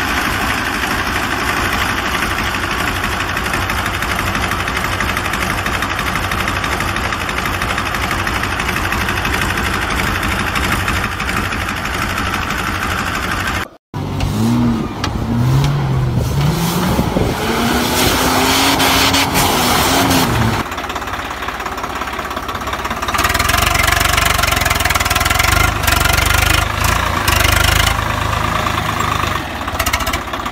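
An engine running steadily; after a brief cut about halfway, its pitch rises and falls for a few seconds, then it settles into a lower steady rumble.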